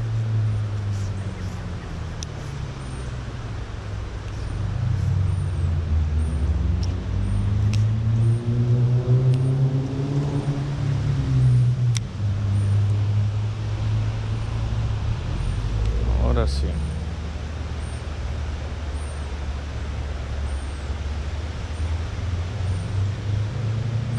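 Steady low rumble of road traffic, with a vehicle engine rising and then falling in pitch through the middle as it passes.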